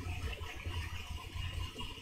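Faint steady low hum with room tone; no other sound stands out.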